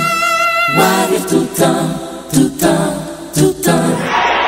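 Choir singing gospel music: a high note held for the first second, then short sung chords broken by sharp percussive hits.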